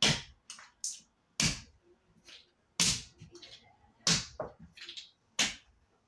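Five sharp smacks at an even pace, about one every second and a third, each followed by a light clatter of small pieces. It is a sandalled foot stomping on a pile of broken wallet pieces and plastic on a wooden floor.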